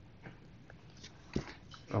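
Faint taps and scratches of a stylus writing on a tablet screen, then a brief sharp mouth noise about one and a half seconds in, just before a man starts speaking.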